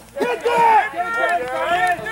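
Excited shouting: voices calling out loudly over a game in progress.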